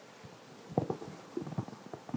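Faint, irregular rubbing and soft bumps of clothing against a clip-on microphone as the wearer raises his arm overhead, starting a little under a second in.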